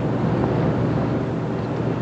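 Steady background rush with a low hum: the room tone of the location recording, with no distinct event in it.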